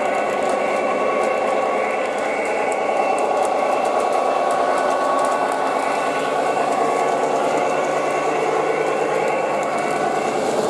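Lionel Conrail GP35 O gauge model locomotive running on three-rail track with its train of freight cars: a steady whirring and rolling sound with faint clicks from the wheels.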